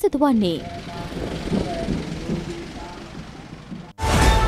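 Motorcycles and other vehicles running past in a slow road convoy, a steady engine and road noise with a few faint short tones over it, fading down gradually toward the end.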